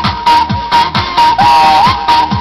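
Folk-style dance music with a steady electronic kick drum a little over twice a second, ticking percussion between the beats, and a high held melody line that wavers about one and a half seconds in.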